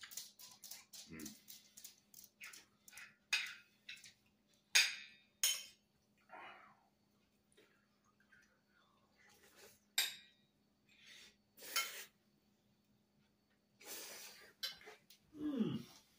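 Cutlery clinking and scraping on a dinner plate while lasagna is eaten, with wet chewing and mouth sounds and a contented "mm" about a second in. It is a run of short, irregular clicks rather than a steady sound.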